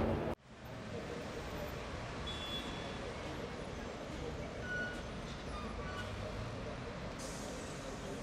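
Steady city street traffic noise, with a few faint, short high-pitched tones scattered through it.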